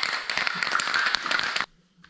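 Aerosol can of Loctite spray adhesive spraying onto a plywood board: a steady crackly hiss that cuts off suddenly about a second and a half in.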